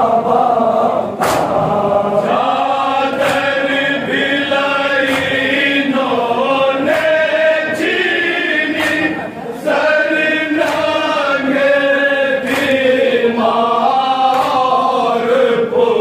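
Men chanting a Muharram nauha (lament) together, with sharp hand-on-chest slaps of matam about once a second keeping the beat.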